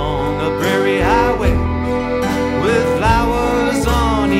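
Instrumental break in a country ballad: a fiddle plays a melody of sliding, curving notes over acoustic guitar and sustained bass.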